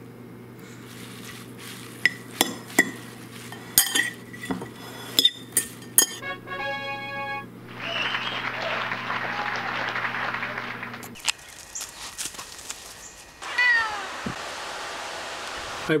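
A spoon and fork clinking against a ceramic bowl as a salad is dressed with vinegar and tossed, with a few seconds of leaves rustling in the middle, over a steady low hum that stops about eleven seconds in.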